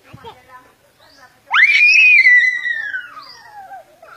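A young child's long, high-pitched scream: it rises sharply about a second and a half in, holds, then slides slowly down over about two seconds.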